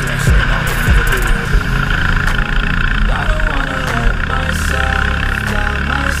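460cc racing kart engine running at racing speed, its pitch rising and falling, under a music track with a melody.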